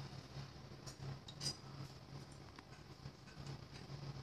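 Faint low hum from a running oven, with a few short, light clinks, the clearest about a second and a half in.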